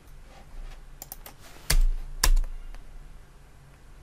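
Computer keyboard keystrokes: a few light key clicks about a second in, then two louder keystrokes about half a second apart near the middle.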